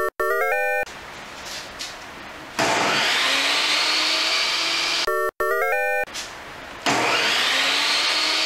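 A Skilsaw benchtop table saw's motor started twice, each time spinning up with a rising whine and then running steadily before stopping abruptly. Short synthesized electronic jingles play at the start and about five seconds in.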